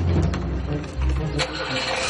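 A Lada Niva's engine starting up and running at a steady low idle, with a few light clicks over it.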